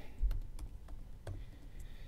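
Typing a short word on a computer keyboard: about five separate, unevenly spaced key clicks.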